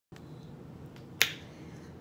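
A single sharp click about a second in, over faint steady room noise.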